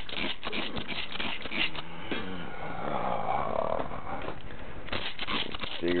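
Water poured onto a paper coffee filter in a metal percolator basket to wet it: a hiss of running water for about three seconds in the middle, with clicks and rustling of handling before and after.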